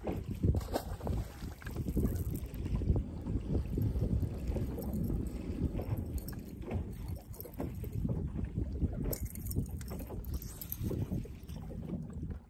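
Wind buffeting the microphone in uneven gusts, a low rumble over choppy water lapping at a boat hull.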